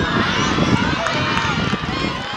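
A crowd of young spectators shouting and cheering together, many high voices at once, reacting to a goalkeeper's diving save.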